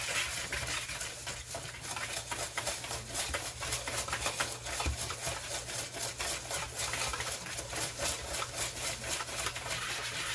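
A utensil stirring a dry mix of flour and spices in a bowl, with quick repeated scraping strokes, several a second.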